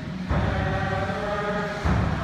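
Concert band playing sustained brass and woodwind chords over heavy low brass. A loud new low chord comes in about a third of a second in and again near the end.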